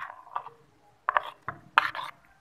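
A metal spoon scraping against a dish while cut jelly cubes are scooped out, in a run of short scrapes and clicks, about five strokes.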